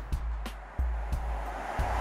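Background music with a steady bass beat; near the end a rising rush of noise begins to swell.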